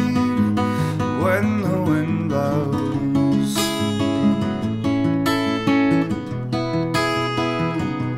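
Acoustic guitar strummed in a steady rhythm, playing chords through an instrumental break of a folk song.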